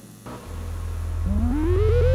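Electronic power-up sound effect: a low hum swells in, then about a second in a warbling tone starts, chirping rapidly, about nine times a second, while climbing steadily in pitch and growing louder.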